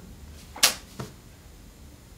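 Quiet room tone broken by one short breathy whoosh about half a second in and a faint click at about one second.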